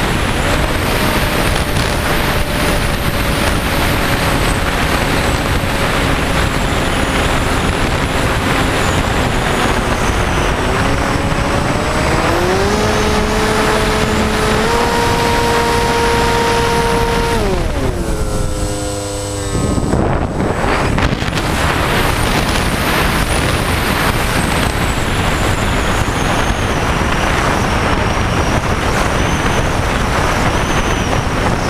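Wind rushing over the onboard camera of an FPV aircraft in flight, with the propeller motor's whine rising in pitch about twelve seconds in, holding, then falling away. A few seconds later the sound briefly drops, then the wind rush returns.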